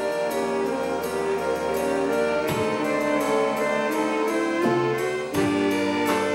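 A school jazz big band playing live: saxophones and trombones sounding sustained chords that change every second or two, over a steady beat from the rhythm section.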